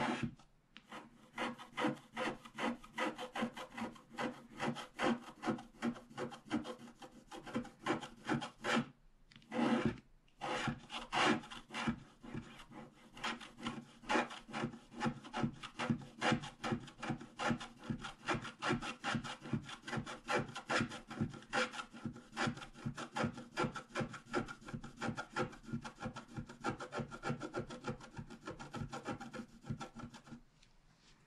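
A wooden scratch stylus scraping the black coating off a scratch-art card in quick, even strokes, about three or four a second, uncovering the purple layer beneath. There is a short pause about nine seconds in.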